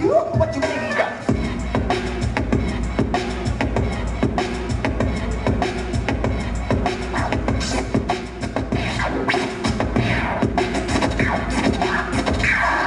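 Turntablist scratching records on turntables over a hip-hop beat: rapid cuts and quick pitch sweeps of the scratched sound. A deep bass beat comes in about a second in and carries on under the scratches.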